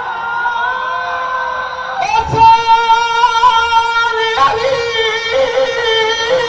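Men's voices singing a lament in long, high held notes, amplified through a microphone. A new, louder note begins about two seconds in and another just after four seconds.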